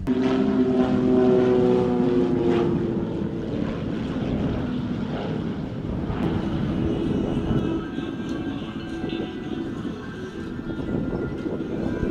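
A light propeller aircraft flies over. Its engine drone holds steady and slowly drops in pitch during the first few seconds as it passes.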